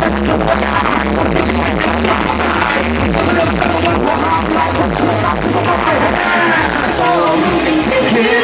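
Loud live electronic dance music played over a stage PA, with a heavy bass line repeating in a steady beat.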